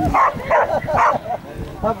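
A dog barking three times in quick succession, short barks about two and a half a second apart.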